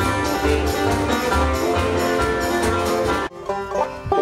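A string band playing live with a drum kit beating steadily under upright bass and guitar. A little over three seconds in it cuts off abruptly to a lone banjo being picked.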